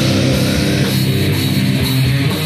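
Crust punk demo recording: distorted guitars, bass and drum kit playing loud and dense.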